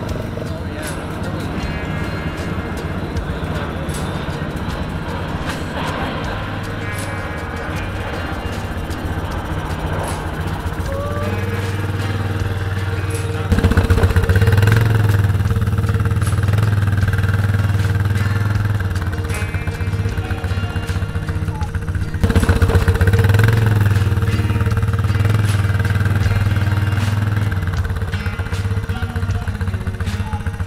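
Quad ATV engine running as it drives across a steel cattle guard, getting suddenly louder about halfway through and again about three-quarters through. Background music with a steady beat underneath.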